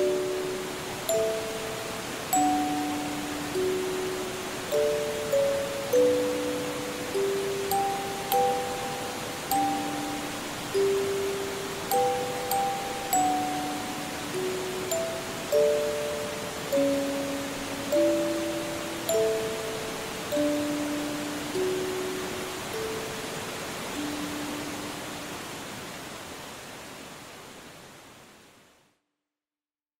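Music box (orgel) playing a slow lullaby melody, one plucked note after another, over the steady rushing of a forest valley stream. Near the end the tune stops and the water fades out.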